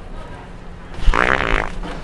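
A loud, rippling fart noise about a second in, lasting under a second, made as a prank.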